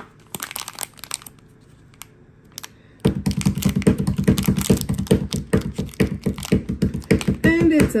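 Foil blind-bag wrapper handled and torn open by hand: a few light crackles at first, then about four seconds of dense, loud crinkling as the foil is opened to take out an enamel pin.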